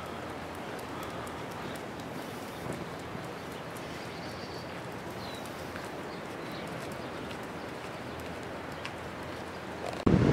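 Footsteps of a person and a dog walking on a paved street, light and even over a steady outdoor background noise, with a few faint bird chirps near the middle.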